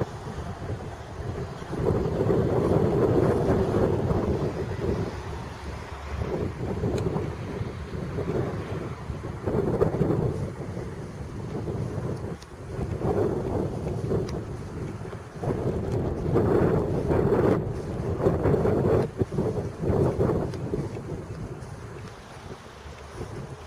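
Wind buffeting an outdoor camera microphone, a low rumble that surges and drops in gusts.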